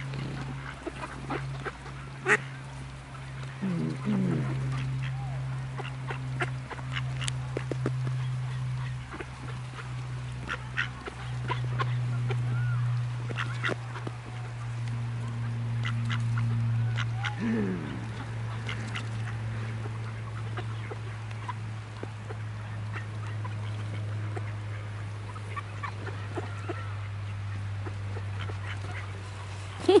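Mallards quacking now and then, with many short soft clicks and a steady low hum underneath.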